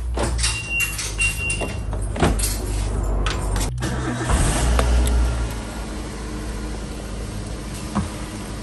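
Small car being started with the ignition key: clicks and knocks as someone settles into the seat, with two short high beeps early on; then, about four seconds in, the engine cranks and catches and settles into a steady idle.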